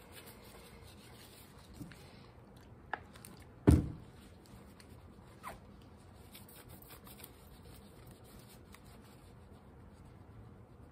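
Faint rubbing of a cloth rag against a copper etching plate as mineral spirits wipe off the hard ground. A few short knocks of the plate being handled, the loudest a single thump a little under four seconds in.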